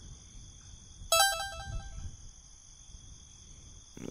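Electronic phone-style chime: a quick run of several short notes about a second in, over a steady background of insects chirring.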